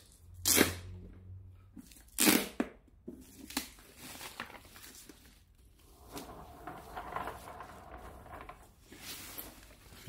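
Soft white foam packing wrap being handled and pulled off by hand, rustling and crinkling, with two louder rustles in the first few seconds and quieter rustling after.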